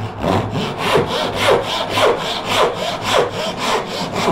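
Fine-toothed Japanese handsaw crosscutting a wooden block with quick, even back-and-forth strokes.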